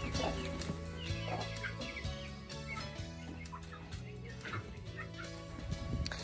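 Chickens clucking with short, scattered calls, over quiet background music with sustained low notes.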